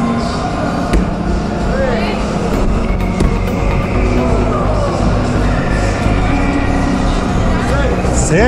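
Background music and voices filling a large indoor hall, with one sharp knock about a second in.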